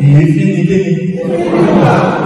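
A man chanting a sung line in Yoruba into a handheld microphone, his voice held on long steady notes.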